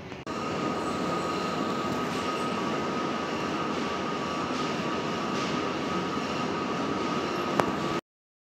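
Steady machine-like noise at an even level with a constant high whine running through it, starting suddenly just after the beginning; a single click near the end.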